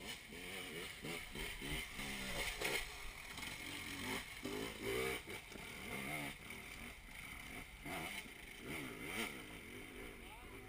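Dirt bike engine revving up and down again and again as it is ridden over rough, bumpy ground, its pitch rising and falling every second or so.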